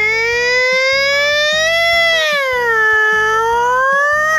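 A woman's voice imitating a fire truck siren: one long wail that rises and falls slowly and drops away at the end. Background music with a steady beat plays under it.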